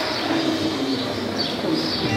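Birds chirping a few times, with a low cooing like a pigeon's, over a steady murmur of room noise.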